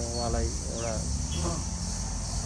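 Steady high-pitched insect chorus, with a man's voice trailing off in the first second.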